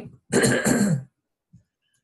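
A woman clearing her throat with a short cough about half a second in, lasting under a second.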